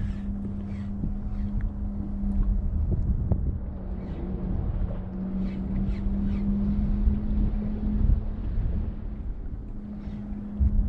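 Wind buffeting the microphone with a low rumble, over a steady low hum, on a boat on open water.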